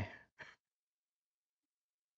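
The end of a spoken word, then a short breath about half a second in, then dead silence.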